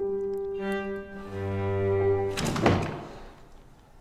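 Dramatic film-score music of sustained bowed strings, low cello tones among them. About two and a half seconds in, a single heavy thud hits, the loudest sound here, and the music then fades away.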